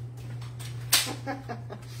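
A sharp plastic clack about a second in, followed by a few lighter knocks, as a paper trimmer is picked up and handled on a wooden table, over a steady low hum.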